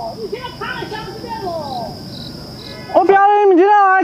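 Crickets chirring steadily in the undergrowth, with a faint voice calling in the distance. About three seconds in, a man's loud, drawn-out shouting voice cuts in over them.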